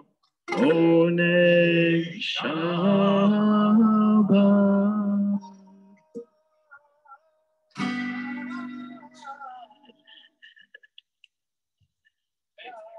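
Acoustic guitar chords with a voice singing along, then a short pause and one last strummed chord that rings out and fades away.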